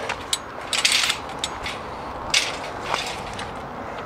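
Steel-mesh garden trailer rattling as it rolls over gravel on new plastic wheels, with the gravel crunching under it. A few louder rattles stand out, about a second in and again midway.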